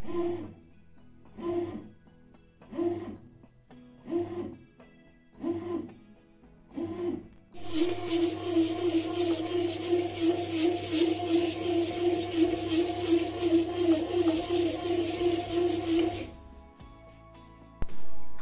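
Bread machine kneading dough. Its motor hums in short pulses a little over a second apart, then runs steadily with a rattling churn for about eight seconds and stops near the end.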